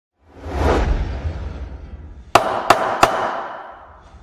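Logo intro sound effect: a swelling whoosh that fades, then three sharp hits about a third of a second apart, each ringing out before the sound dies away.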